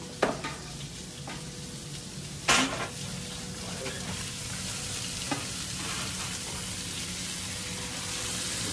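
Fish frying in hot oil: a steady sizzle, with two sharp knocks, about a quarter second in and about two and a half seconds in, and a few lighter clicks.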